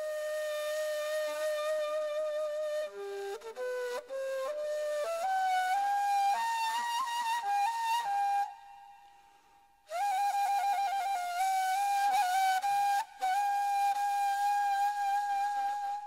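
Solo flute playing a slow, ornamented ilahi melody. It holds a note, then climbs step by step through short phrases and breaks off about eight and a half seconds in. It resumes with a quick trill and ends on a long held note.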